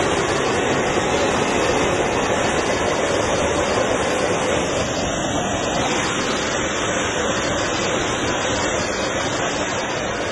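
Oxygen escaping under pressure from a leaking tanker line: a loud, steady rushing hiss of venting gas that fades slightly near the end.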